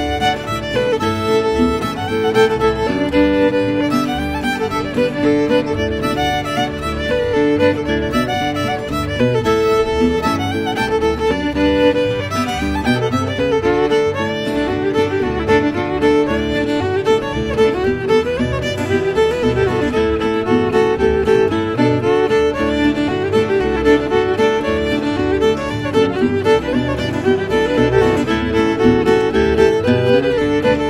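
Old-time fiddle tune in the key of D, played on fiddle in standard tuning, with acoustic guitar backing it in a steady rhythm throughout.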